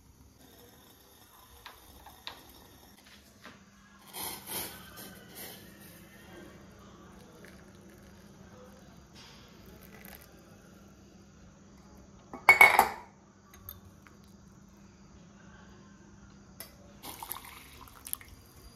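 Steel cookware and a wire-mesh strainer clinking, with liquid poured through the strainer into a bowl; the loudest is a short, sharp metal clatter about two-thirds of the way in. A faint steady low hum runs underneath.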